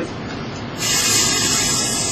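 A man's drawn-out 'psssh' hiss made with the mouth, lasting about two seconds from a little under a second in, imitating trapped air rushing out of the chest through a decompression needle, like air let out of a tire.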